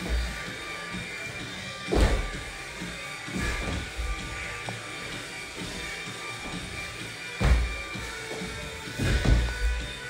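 Heavy thuds of a person's body and feet hitting a laminate floor during burpees, about five at irregular intervals, over steady background music.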